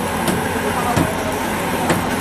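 Chicken balls deep-frying in a wide wok of hot oil, a steady sizzle mixed into busy street noise of traffic and voices, with three sharp clicks about a third of a second, one second and two seconds in.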